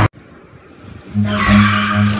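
Car tyres squealing, starting about a second in after a near-quiet first second, with music beginning underneath.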